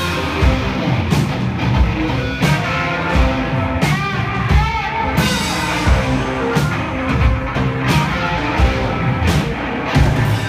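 Live rock band playing loud: electric guitar and drum kit, with a cymbal crash about every second and a half.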